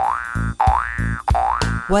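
Cartoon spring "boing" sound effects, repeated about every half second, each a quick rising pitch glide over a soft thud, matching a hopping cartoon kangaroo.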